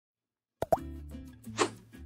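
Logo intro sting: silence, then a sharp pop about half a second in, followed by steady music with a short swish near the end.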